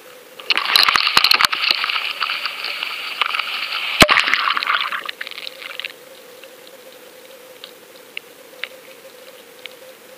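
Water rushing and crackling around a GoFish underwater camera's housing as it is cast out and goes into the water, lasting about five seconds, with a sharp knock about four seconds in. After that only a faint steady hum and a few small ticks remain.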